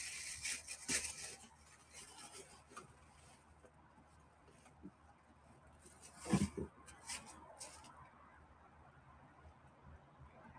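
Rustling and crinkling of packaging as clothes are pulled out of a cardboard shipping box, loudest in the first second, then faint handling noises. About six seconds in there is a brief low vocal sound, like a grunt.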